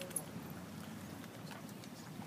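Faint outdoor background of low murmur with a few light clicks and taps, one sharper tick just after the start.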